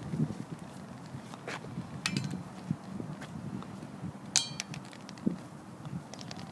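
Footsteps and the tip of a long white cane tapping and scraping on a concrete sidewalk, in irregular short knocks. Two sharper, ringing clicks stand out, about two seconds in and just past four seconds.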